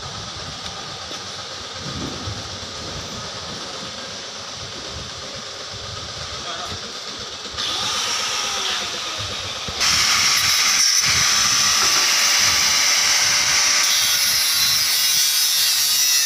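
Electric angle grinder with a cutting disc slicing through a steel exhaust pipe: a loud, steady, hissing grind that comes in about ten seconds in, after quieter steady workshop noise.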